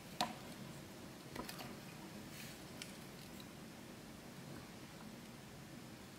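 Small handling sounds at a fly-tying vise over quiet room tone: one sharp click just after the start, then a few faint ticks while hackle is wound onto the hook.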